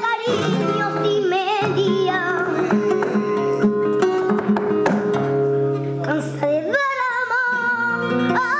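Live flamenco: a woman's voice singing ornamented, wavering lines over a flamenco guitar. Her line ends just after the start, and the guitar carries on alone with plucked notes and strums. The singing comes back in near the end.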